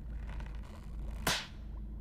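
A rubber glove snapping once: a single sharp crack a little over a second in, over a low steady hum.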